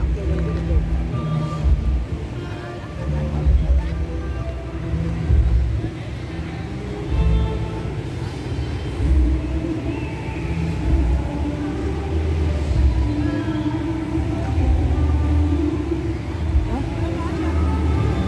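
Music with a heavy bass line playing, with people's voices mixed in.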